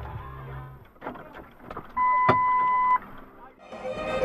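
A steady electronic beep lasting about one second, starting about two seconds in, of the kind used to bleep out swearing, with a sharp knock partway through it. Before it, the low running of a car and road noise fades out.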